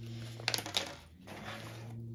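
Small plastic diamond-painting tools landing and being moved on a wooden tabletop: a few light clicks and knocks about half a second in.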